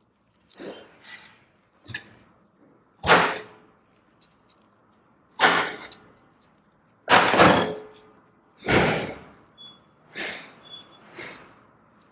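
A series of about ten separate knocks and scrapes on a steel worktop, with gaps between them, as gloved hands handle a soft dough and press cherry tomatoes into it. Two of the knocks are louder thuds.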